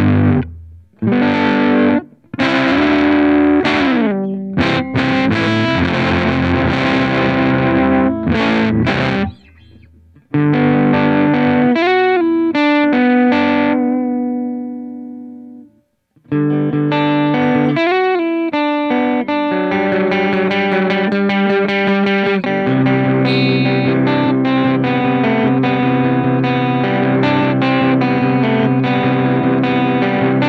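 Electric guitar (Squier Paranormal Super-Sonic) played through a Dogman Devices Earth Overdrive pedal into a Strymon Iridium amp modeller: overdriven chords and riffs with a few short stops. About halfway a chord is left to ring out and fade to silence, then the playing starts again and runs on.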